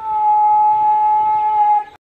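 A horn sounding one long, steady held note that scoops up into pitch at the start and cuts off suddenly near the end.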